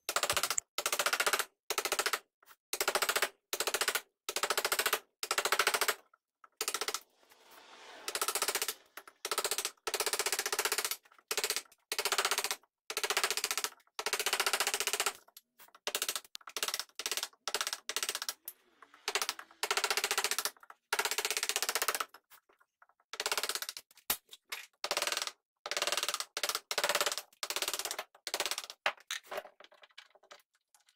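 Carving gouge cutting into a beech block: a long run of short cuts, each about half a second, coming one to two a second with a few brief pauses, as wood is scooped out to form a mold.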